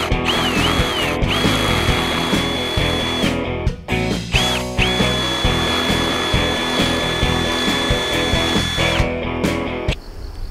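Cordless drill spinning a bit against a concrete footing: a motor whine that spins up and down in a few quick trigger pulses, then is held for about two seconds and again for about four seconds. A plain drill like this makes little headway in concrete, which needs a hammer drill. Guitar music plays underneath.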